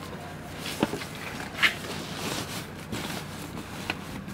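A fabric backpack being shoved and settled among luggage in a packed car boot, rustling, with two short knocks about a second apart.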